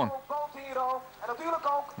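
A man's voice speaking in short phrases with brief gaps between them.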